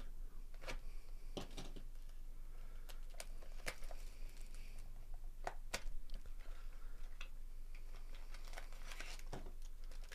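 Hands handling trading-card packaging: scattered light clicks and crinkles of card stock, plastic and a foil pack wrapper, over a faint steady low hum.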